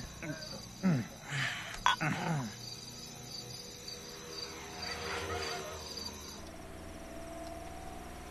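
Crickets chirping in a steady pulsing rhythm, stopping abruptly about six seconds in, followed by a low steady hum. A voice makes a few short sounds that fall in pitch near the start.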